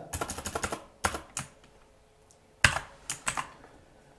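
Computer keyboard typing: a quick run of key presses in the first second as text is deleted, then a few separate clicks, the loudest about two and a half seconds in.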